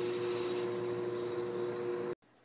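Steady background hum and hiss from a running machine, with two steady low tones held throughout.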